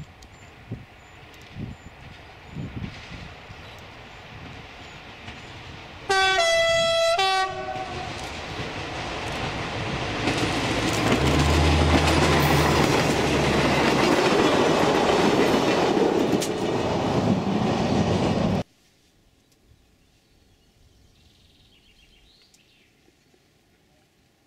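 SNCF X2800-class diesel railcar approaching and sounding a horn blast of about a second and a half that steps between notes. It then passes close by, with engine and wheels running loud for about ten seconds, until the sound cuts off suddenly about three-quarters of the way in.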